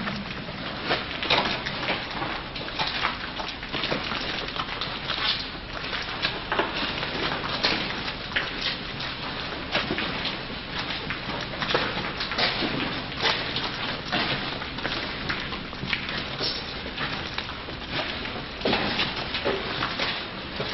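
Footsteps of several people walking on a gritty floor, with their clothes and backpacks rustling: a run of irregular crunches and crackles over a steady hiss.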